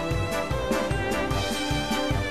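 Music with a steady beat, about two beats a second, under sustained melodic notes.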